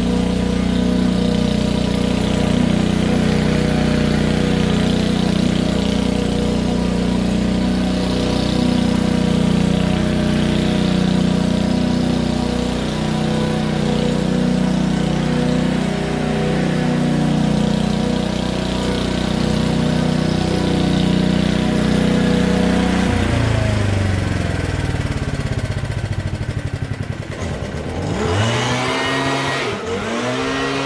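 Small petrol garden-tool engine running steadily. About 23 seconds in, the sound breaks into engine pitch that sweeps down and back up, like revving.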